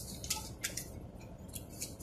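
Several short, faint rustles and clicks of a paper bank deposit slip being handled and put down, over a low steady hum.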